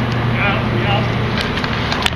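Street-hockey sticks clacking on the concrete court, a few sharp knocks over a steady low hum. A brief high call, like a distant shout, comes about half a second in.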